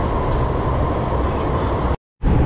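MTR metro train running, heard from inside the passenger car: a steady loud rumble with a steady high hum over it, cut off abruptly near the end.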